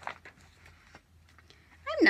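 A paper picture-book page being turned: a brief rustle at the very start, then quiet room tone. A woman's voice starts just before the end.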